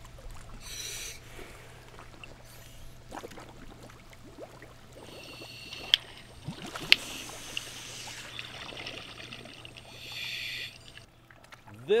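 Scuba regulators breathing underwater: hissing inhalations about a second in and again near the end, with a stretch of bubbling exhalation in between and two sharp clicks.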